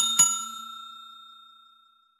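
Notification-bell 'ding' sound effect: two quick strikes that ring out and fade away over about a second and a half.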